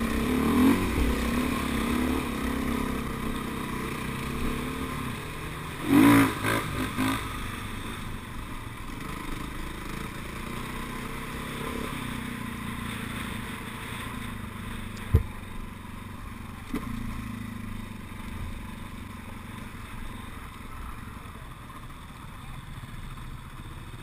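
Dirt bike engine running as the bike rides along a rough dirt track, heard from a helmet camera, with a loud knock and clatter about six seconds in and a single sharp tap around fifteen seconds. The engine gets quieter toward the end.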